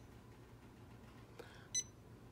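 Janome Memory Craft 550E embroidery machine's touchscreen giving one short, high beep near the end, the tone that confirms a button press.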